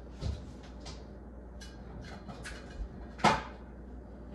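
Kitchen cabinet being opened and shut, with faint handling noises and one sharp knock a little over three seconds in.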